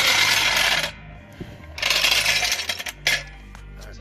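Steel hydraulic floor jack being worked on asphalt to lift the car: two bursts of metallic rattling and scraping, each about a second long, and a sharp click near the end.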